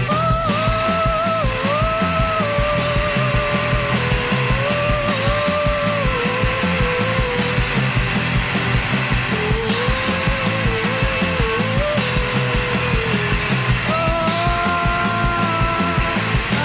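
Live hard rock band playing loud: drum kit with a steady beat under distorted electric guitars, with a sustained melody line held and shifted in steps over it.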